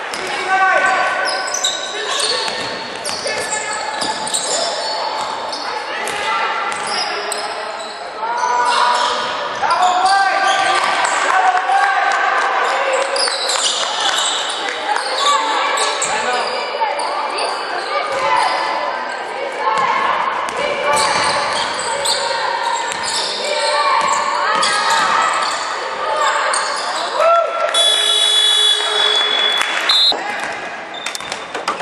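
Basketball game sounds in a large echoing hall: the ball bouncing on the hardwood court and sneakers squeaking on the floor throughout. A referee's whistle is blown for about two seconds near the end.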